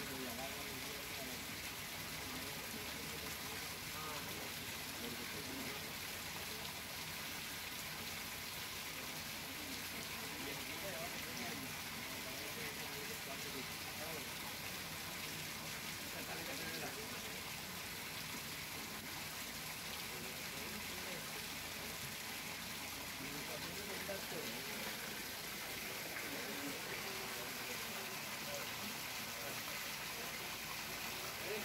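A steady stream of water pouring and splashing into a fish tank, churning its surface, with indistinct voices in the background.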